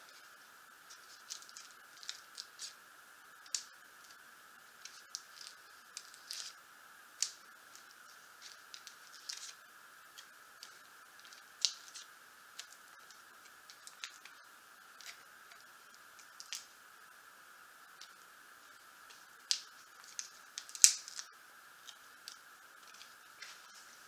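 Self-adhesive clear rubber bumper pads being peeled off their plastic backing sheet and pressed onto a painted wooden base: scattered small crackles and ticks at irregular intervals, the loudest near the end.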